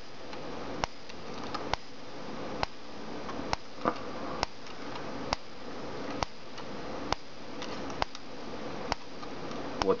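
Home-built magnetic pulser coil clicking sharply each time its photo-flash capacitor bank is discharged through it by an SCR, an even click a little under once a second.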